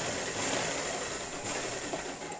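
Motorised domestic sewing machine running steadily as it stitches a seam, easing off just after the end.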